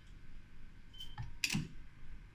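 A few small clicks, then a sharper metallic click about one and a half seconds in, as a robot's two-finger gripper lowers a steel shaft into a small steel bearing ring.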